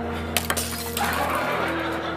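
A drinking glass breaking, heard as a few sharp crashing clinks about half a second in and one more near a second, over a held dramatic music chord.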